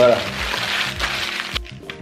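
Paper sandwich wrapper rustling and crinkling as it is unfolded by hand, stopping about a second and a half in.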